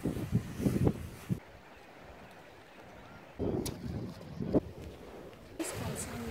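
Bare feet stepping through shallow water and wet sand, with soft splashing and squelching in two bursts: one at the start and one around the middle.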